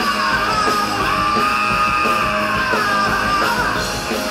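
Live rock band playing loud, with electric guitars, bass and drums. A singer holds a long, high belted note over them, and the note bends and wavers near the end.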